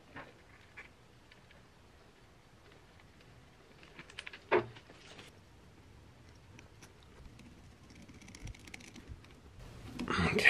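Quiet handling of tractor wiring: a few light clicks and taps, with one sharper click about halfway through, as electrical connectors are pushed together by hand.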